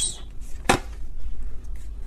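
Tarot cards being handled between card draws: one sharp snap about two-thirds of a second in, a few faint ticks, and a low steady hum underneath.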